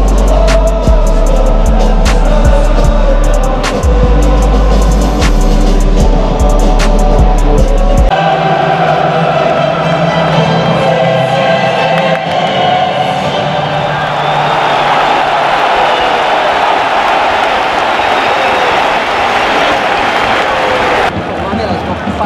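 Music with a deep bass beat and sharp clicks, which stops suddenly about eight seconds in and gives way to the dense, steady noise of a large football stadium crowd, with some held pitches running through it.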